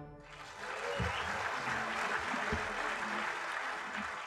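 Live audience applauding at the end of a big-band number. The clapping rises about a third of a second in, after the band's last note has died away, and then holds steady.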